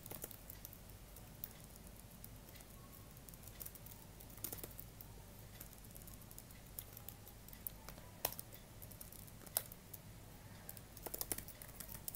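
Faint computer keyboard typing: scattered single keystrokes, with a quicker run of keys near the end.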